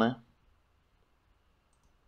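The end of a spoken word, then near silence with a couple of faint, brief clicks near the end.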